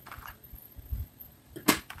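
Loose salvaged metal and plastic parts clicking and rattling in a plastic tub as a hand rummages through them, with one sharp click near the end.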